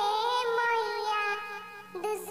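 A high-pitched, pitch-shifted cartoon-cat voice sings one long held note. The note wavers slightly and fades away near the end.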